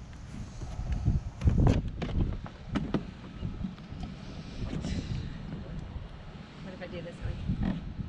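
Low rumble of wind on the microphone, broken by a few knocks and scrapes as a small plastic kayak moves on a plastic dock launch ramp. The loudest knocks come in the first three seconds.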